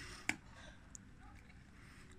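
A dog gnawing on a pork hock bone: one sharp crunch about a third of a second in, then faint scraping and ticks of teeth on bone.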